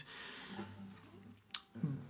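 A quiet pause between a man's sentences: faint breathing, with one short sharp click about one and a half seconds in.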